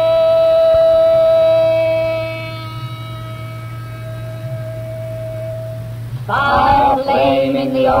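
A single held musical note over a low steady hum, easing down a couple of seconds in and stopping about six seconds in. A voice then begins intoning a rhyming incantation.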